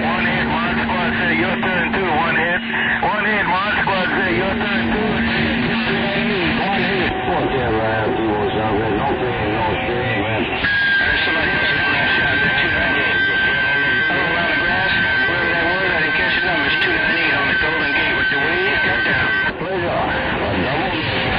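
CB radio receiver on 27.025 MHz carrying several distant stations transmitting at once over heavy static: garbled, overlapping voices that cannot be made out. Steady heterodyne whistles from colliding carriers run through it: a low tone for the first few seconds, then a high whistle from about halfway until just before the end.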